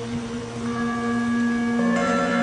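Steady drone of the mantra's backing music held between sung lines, a few flat sustained tones with no voice; a higher tone comes in about a third of the way through and a lower one near the end.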